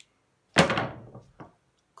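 A 16 by 20 stretched canvas, wet with a white base coat, dropped flat onto the work table: one loud clunk about half a second in, then a fainter knock. The clunking jars the air bubbles in the paint up to the surface.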